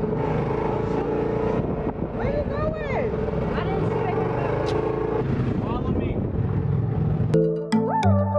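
UTV engine running steadily while driving, with road and wind noise, and a voice speaking briefly over it. Music cuts in near the end.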